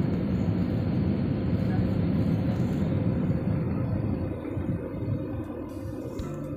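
Jet airliner cabin noise on approach: a steady, loud rumble of engines and airflow, easing somewhat after about four seconds.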